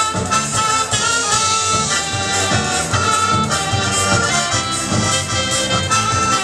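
Live folk dance band playing an instrumental passage without singing: a melody led by accordion over bass and drums, with a steady dance beat.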